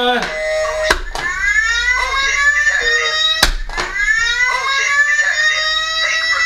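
A pitched, horn-like sound played twice. Each time it starts with a click, glides up in pitch and then holds for about two and a half seconds; the second begins about three and a half seconds in.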